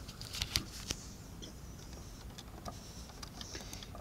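Light clicks and knocks of fingers handling a plastic Lego model, a quick cluster in the first second, then a few faint ticks over low steady hiss.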